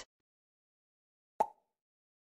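A single short pop sound effect about one and a half seconds in, cueing the learner to repeat the word.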